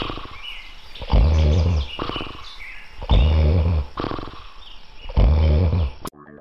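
A man snoring heavily: a deep, rattling snore about every two seconds, three in a row.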